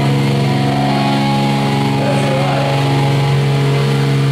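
Amplified electric guitar and bass holding one steady, low, droning chord, with a voice calling briefly over it about halfway through.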